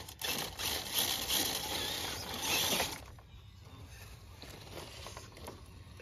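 Axial Basecamp RC crawler with a Castle brushless motor, its motor and geared drivetrain running as it crawls over rock, tires scrabbling on the stone. Louder for about the first three seconds, then quieter.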